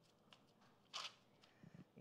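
Near silence, with one brief faint rustle about a second in from hands pressing a shredded-chicken crust mixture onto parchment paper on a baking sheet.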